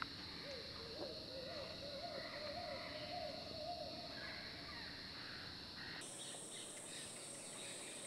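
Night ambience: a quick run of wavering hoots for about three seconds over a steady high insect drone, with the background track switching abruptly about six seconds in.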